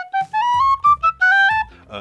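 Brass tin whistle playing a quick run of notes that climbs step by step into the second octave, ending just before two seconds in. The player offers it as steadier in volume through the lower second octave than a Humphrey whistle.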